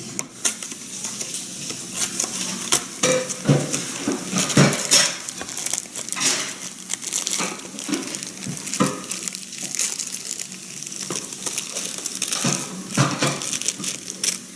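A cardboard cookie box being opened by hand and a plastic-wrapped tray of cookies pulled out of it, with irregular crinkling and rustling of the plastic wrapper and small knocks of the cardboard.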